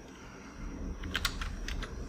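Computer keyboard typing: a quick run of keystrokes in the second half, over a faint low hum.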